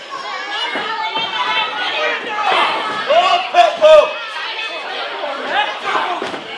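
Crowd of spectators chattering and calling out in a large hall, with a few loud, high-pitched shouts about three to four seconds in.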